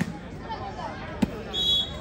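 A volleyball bounced on the dirt court before a serve, with a single sharp bounce about a second in, then a short, steady whistle blast near the end, over faint crowd chatter.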